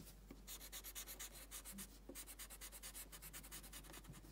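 Faint scratching of a graphite pencil on sketch paper in quick, even back-and-forth strokes, several a second.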